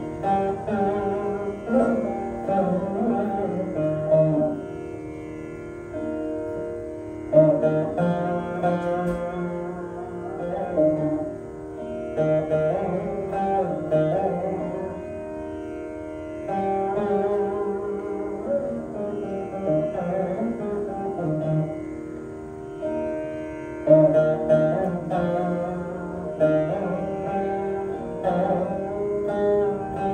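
Saraswati veena played solo in raga Shankarabharanam: phrases of plucked notes sliding between pitches over ringing drone strings, in groups a few seconds long with short pauses between, without drum accompaniment.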